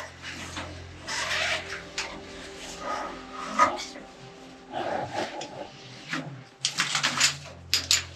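Irregular scuffing and scraping of people clambering over rock in a narrow mine passage, over a steady low hum.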